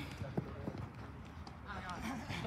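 Footsteps of football players running on an artificial-turf pitch, faint under an outdoor background rumble; a man's voice starts calling out near the end.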